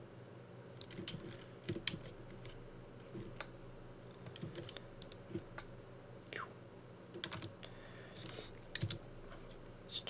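Faint, scattered clicks of a computer keyboard and mouse, a few to several a second in irregular bunches, over a steady low hum.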